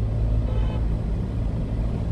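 Steady low drone of a 1-ton box truck driving in slow city traffic, heard from inside the cab: engine and road noise with no sudden events.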